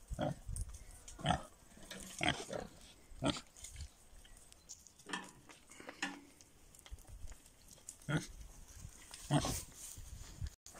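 Pigs grunting in short, separate grunts, about one a second, with a pause of a couple of seconds past the middle.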